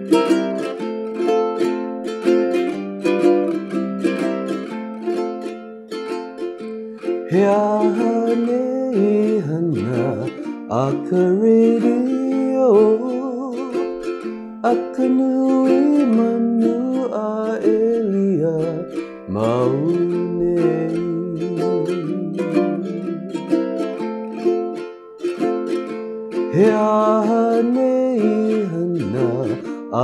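Ukulele strummed in the key of F, opening with a Hawaiian vamp of G7, C7 and F chords played twice. About seven seconds in, a man's voice begins singing a Hawaiian-language song over the ukulele accompaniment.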